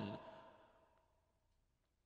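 Near silence: the tail of a man's spoken word dies away in the first half second, leaving quiet studio room tone.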